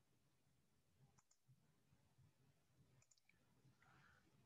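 Near silence with a few faint computer mouse clicks: a pair just after one second in and a quick run of about three around three seconds in.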